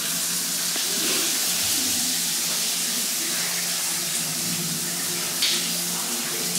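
Water running steadily in a bathroom, a constant hiss.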